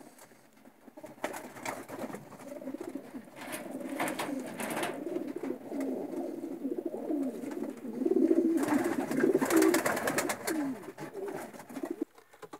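Racing pigeons cooing: low, warbling coos that come again and again and are loudest about two-thirds of the way through.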